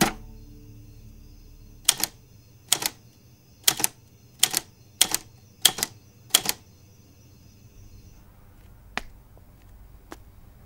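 Typewriter keys striking the paper seven times, one letter at a time, each stroke a sharp double clack, coming a little faster toward the end; a faint single tick follows a few seconds later.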